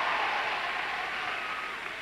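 Audience applause at an awards ceremony, dying away toward the end.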